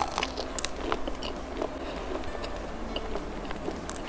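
A bite into a rolled crispy Milo crepe, a lacy net of fried batter, with a sharp crack right at the start, then continuous crisp crackling as it is chewed.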